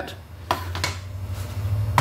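A few light plastic clicks as a car dashboard air vent and its bezel are handled and pulled apart, over a low steady hum.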